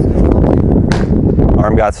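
Loud, low, uneven rumble of wind buffeting a clip-on microphone, with a pitched baseball popping into the catcher's mitt about a second in. A man's voice comes in near the end.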